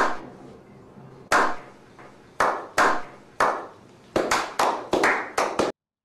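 A slow clap: single hand claps, each with a short echo, well over a second apart at first and coming faster and faster toward the end, then cutting off suddenly.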